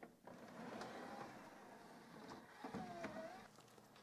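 Faint whir of a LaserDisc/DVD combo player's motorized disc tray drawing in and closing, with a thin motor tone now and then.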